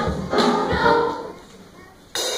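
Children's choir singing with drum-kit accompaniment; the music breaks off about a second and a half in, leaving a short pause.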